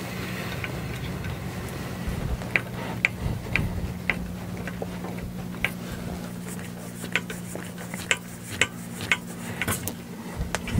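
Irregular small metallic clicks and taps, about a dozen, starting about two seconds in, as screws, hardware and tools are handled against an aluminum printer frame plate during assembly. A steady low hum runs underneath.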